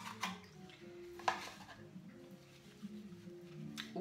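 A few light clicks and knocks as a perfume bottle is taken out of its wooden case, over soft background music. The sharpest knock comes about a second in.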